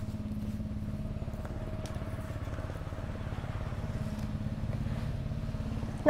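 An engine idling steadily: a low, even hum with a fast regular pulse that does not change in pitch.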